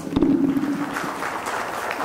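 Audience applause starting about a second in, after a short thud and a brief low hum at the start.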